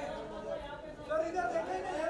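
Chatter of several voices talking over one another, growing louder about a second in.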